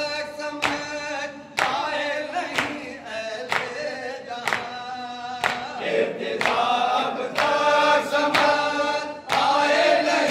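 Male voices chanting an Urdu noha together, accompanied by rhythmic matam: hands slapping chests in time, about once a second.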